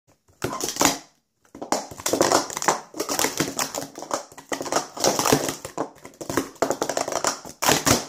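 Plastic sport-stacking cups being stacked up and down fast on a stacking mat: a rapid, continuous clatter of cups clicking and sliding together, with a brief pause about a second in.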